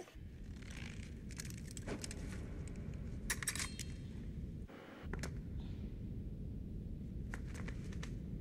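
Film soundtrack with no dialogue played over a hall's speakers: a steady low rumble with scattered sharp metallic clicks and clinks, as from gear and a cable rig.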